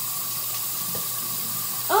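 Water running steadily from a bathroom sink tap.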